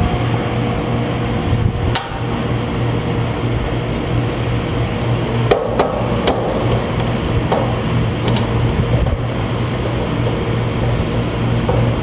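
Sharp metal clicks and knocks from handling an air conditioner's fused disconnect box, a few seconds apart, over a steady mechanical hum.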